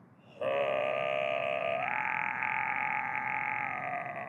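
A man holding one long wordless vocal note, a chant-like drone that starts about half a second in and steps up to a higher pitch about two seconds in.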